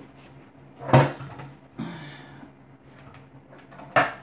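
One sharp clack about a second in, then softer knocks and a click near the end: a hard object being handled and set down on a surface.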